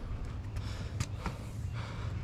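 Heavy breathing of a man climbing a steep trail, hard breaths roughly once a second, with a couple of sharp clicks partway through over a steady low rumble.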